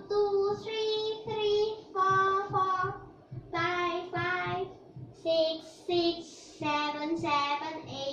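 A young girl chanting pairs of digits in a drawn-out, sing-song voice, two long held syllables at a time with short pauses between, as she recites the doubled digits she is writing ("two two, three three, four four...").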